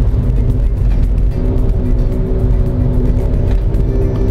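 Steady low engine and road rumble inside the cabin of a moving Nissan Grand Livina, with its 1.5-litre HR15DE engine driving through a CVT, under background music.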